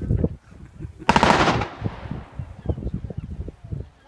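Staged battle pyrotechnics on a film set: a loud rattle of rapid reports about a second in that dies away over about half a second, with scattered low thuds before and after.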